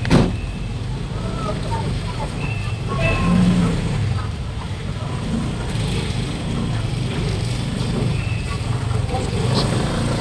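Busy market-street ambience: car and motorcycle engines running in slow, crowded traffic, with scattered voices of people around. A sharp knock right at the start.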